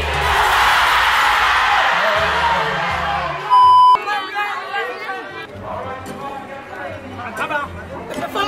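A crowd screaming and cheering over music with a low beat, broken off about three and a half seconds in by a short, loud, steady electronic beep. After it, a crowd chatters and laughs over quieter music.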